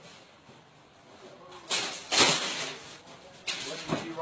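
Rough rustling and bumping on the phone's microphone as the recording phone is picked up and moved. There are two loud bursts a little under halfway through and another shorter one near the end.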